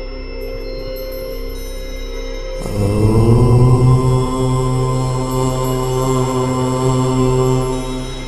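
A man chanting a long "Om" over a steady meditation drone. The chant starts about two and a half seconds in with a short upward slide into a low note, which is held for about five seconds before it fades.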